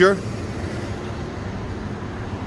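Steady traffic noise of a skip lorry passing close by on a city street, an even rumble and hiss.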